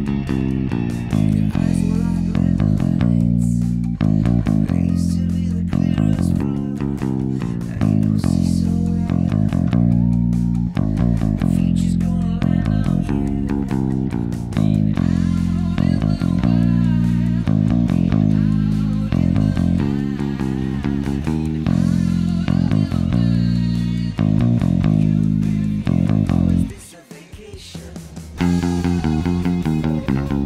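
Electric bass played along with a sung rock recording, the recording sped up about a semitone. The music drops out briefly near the end, then comes back in.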